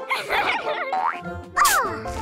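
Cartoon sound effects over children's background music: a short scratchy noise, then a rising boing-like glide, and a bright burst with falling glides near the end.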